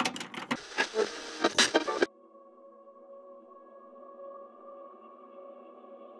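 About two seconds of irregular crackling noise that cuts off suddenly, followed by a faint, steady ambient drone of several held tones.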